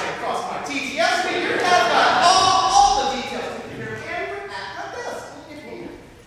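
Actors speaking on stage, heard from the audience through a large, echoing hall, so the words are indistinct.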